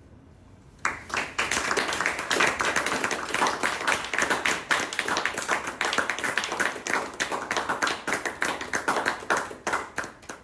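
Audience applause, a dense patter of many hands clapping, starting about a second in and dying away near the end.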